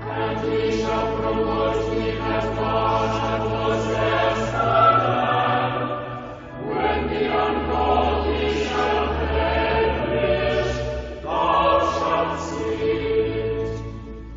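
Choir singing church music in long held phrases, with short breaks about six and a half and eleven seconds in, over held low bass notes.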